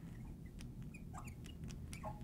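Faint short squeaks and ticks of a marker tip writing on a glass lightboard, mostly about a second in.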